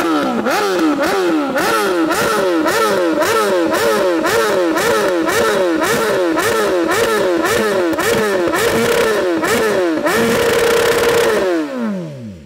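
BMW S1000RR inline-four sportbike engine revved hard while stationary, the throttle blipped about twice a second so the note rises and falls over and over. Near the end the revs are held high for a moment, then drop back toward idle. The engine is being run to get the exhaust hot enough to throw flames.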